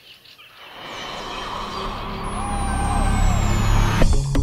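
A sound-design swell for an intro: a rumble and rush growing steadily louder, with a thin whistle falling slowly in pitch over its second half, building up to the start of electronic music at the very end. A few faint chirps sound near the start.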